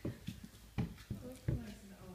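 Footsteps climbing wooden stairs: three steady footfalls about three-quarters of a second apart.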